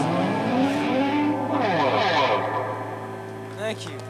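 Electric guitar ringing out through effects pedals at the close of a live rock song: sliding, sweeping pitches over a steady amplifier hum, fading away.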